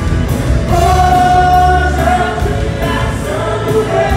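Live band music with women's voices singing together over bass and drums; a long note is held for over a second near the start.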